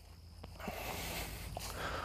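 Quiet outdoor sound: a man breathing, with a steady low rumble and a few faint soft steps on grass. The breathing grows audible about half a second in and swells toward the end.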